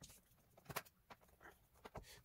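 Near silence with a few faint clicks and taps, the clearest about three-quarters of a second in: hands handling a laptop's plastic bottom cover.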